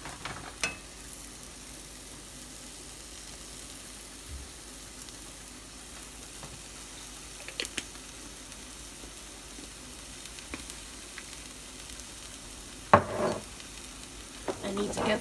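Egg scramble with peppers and onions sizzling quietly in a frying pan, with a few small clicks and one sharp knock near the end.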